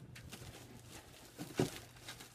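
Faint handling sounds: soft rustling with a few light clicks and one short knock about one and a half seconds in.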